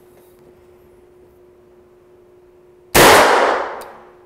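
AirForce Texan big-bore precharged air rifle firing a single shot about three seconds in: one loud report that fades away over most of a second. The radar chronograph clocks this shot at 953.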